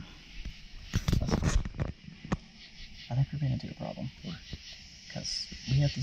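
Low, hushed voices talking from about three seconds in, preceded by rustling and a few sharp clicks of handling noise in the first couple of seconds.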